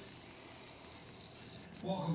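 A lull: faint background hiss with a thin steady high-pitched whine, and a voice starting again just before the end.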